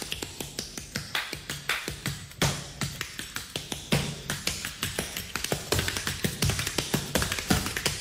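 Instrumental dance-pop intro: a sparse percussive beat of sharp clicks and snaps, several a second, over low thumps, with no singing.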